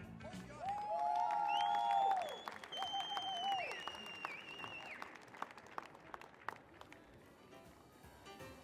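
Audience clapping and cheering with several long whistles as the music stops. The applause dies away over the last few seconds.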